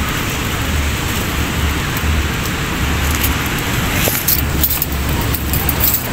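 Steady wash of beach surf with wind rumbling on the microphone. Crinkly rustling of a plastic bag and paper food wrapping comes in a little after four seconds in.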